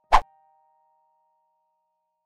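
A single sharp, loud click or pop at the very start, over the faint held notes of background piano music dying away.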